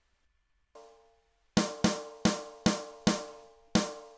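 Dry GarageBand Rock Kit snare drum sample played back: a faint hit about three-quarters of a second in, then six loud, sharp snare hits in an uneven pattern over the last two and a half seconds. Each hit leaves a ringing midrange tone, the unprocessed ring that the mixer later cuts with EQ.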